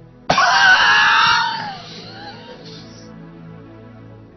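A person's voice letting out a sudden loud scream a fraction of a second in, lasting about a second and fading away, over soft sustained background music.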